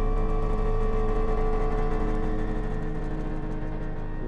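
Sustained drone from the TV series' score: a steady deep hum with several held tones layered above it, unchanging throughout.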